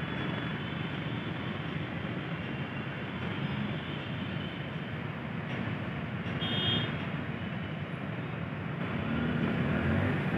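Steady road traffic noise from vehicles passing on the road, with a brief high tone about six and a half seconds in and an engine rising in pitch near the end.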